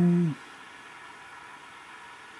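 The tail of a drawn-out spoken 'okay', then a faint steady hiss with a faint hum under it.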